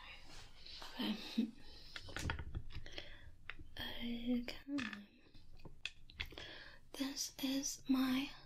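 A woman whispering in soft, broken phrases, with a few faint clicks among them.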